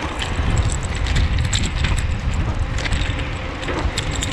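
Ride noise from a VSETT 10+ dual-motor electric scooter climbing a hill at full power in sport mode, fifth gear: a dense low rumble of wind on the microphone and tyres on asphalt, with scattered light clicks and rattles.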